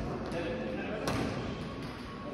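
Sharp badminton racket hits on a shuttlecock echoing in a large sports hall, the loudest about a second in, with voices behind.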